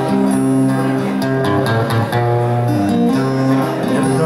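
Steel-string acoustic guitar played alone, chords ringing and changing every second or so in an instrumental passage of a slow ballad.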